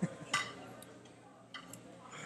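Short clicks of a computer mouse paging through photos: one sharp click about a third of a second in and a fainter one about one and a half seconds in, over quiet room tone.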